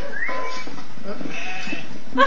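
Sheep bleating, heard as playback of a video on the computer.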